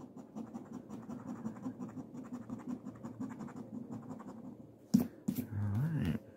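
A coin scratching the scratch-off coating from a lottery ticket in quick, rapid strokes. About five seconds in, two sharp taps come, followed by a brief voiced sound at the end.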